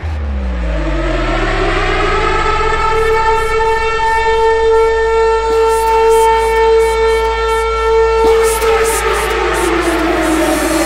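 Air-raid-siren-style wail in the intro of a hardcore dance track: one long tone that rises over about three seconds, holds, then falls away near the end. It sits over a low, steady bass drone, with faint ticks from about three seconds in.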